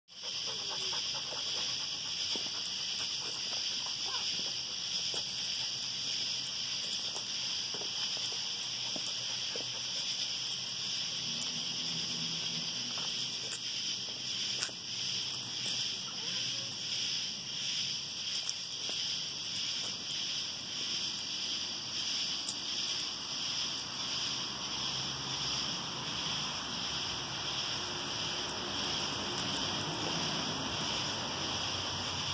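Night insects calling in a steady, high, finely pulsing chorus. A faint low sound joins in about a third of the way through and again near the end.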